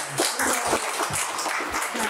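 Applause from a small group of people around a table, many uneven hand claps overlapping.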